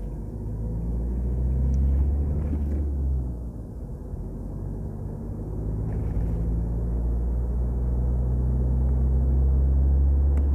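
Low, steady drone of a car's engine and tyres on the road heard inside the moving car, dipping briefly about three seconds in and then building again.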